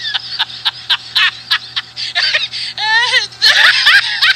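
A high-pitched, squeaky voice in quick, short bursts, with a longer whining call about three seconds in.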